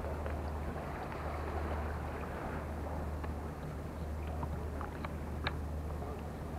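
A steady low hum like a running engine, under a haze of wind noise, with a few faint light ticks near the end.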